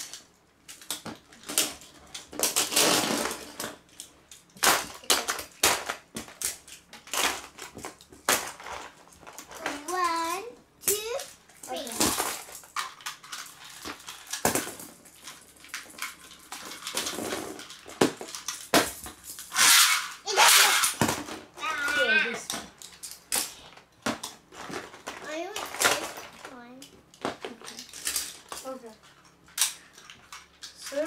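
Beyblade spinning tops launched onto a clear plastic tub lid, spinning and clattering against the plastic with many sharp clicks and knocks.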